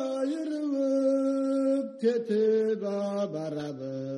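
A voice singing slow, long-held notes in a chant-like style, the melody stepping down in pitch in the second half, with a lower note sounding underneath near the end.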